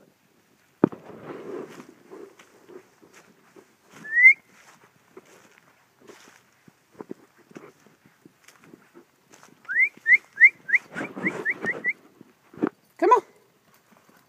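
A person whistling to call dogs: one rising whistle about four seconds in, then a quick run of about eight short rising whistles near ten seconds. There is a knock with rustling after it about a second in, and a dog barks once near the end.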